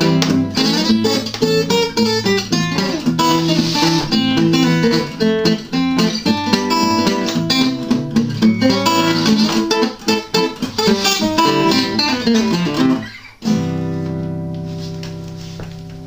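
Harmony H-6362 acoustic guitar with a cedar top and Honduras mahogany back and sides, played unaccompanied: a busy run of picked notes and chords. Near the end a final chord is struck and left ringing, fading away.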